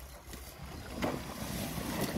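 Water gushing and splashing as carp are let out of a fabric stocking sleeve into shallow water, growing louder about a second in.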